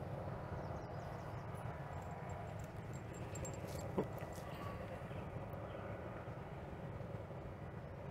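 Steady low outdoor background hum and rumble with faint steady tones, broken only by one brief short sound about halfway through.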